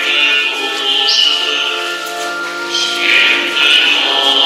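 Church music: long held chords, organ-like, with voices singing over them.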